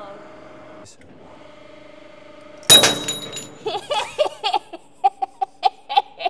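Hydraulic press holding full pressure with a steady hum. About two and a half seconds in, a sudden loud crack with high metallic ringing as the hardened steel bearing part under the ram gives way. Laughter follows.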